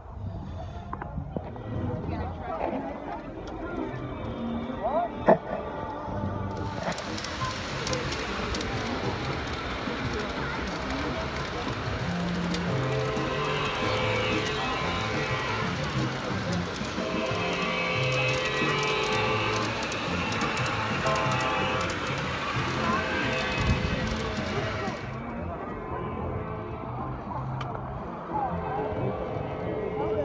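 Music playing from about seven seconds in until it stops sharply about five seconds before the end, over a muffled outdoor background. Before and after the music, the background holds only a few sharp knocks.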